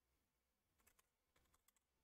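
Near silence with a few faint computer keyboard key clicks in a quick cluster about a second in, as a word is typed into a dictionary search.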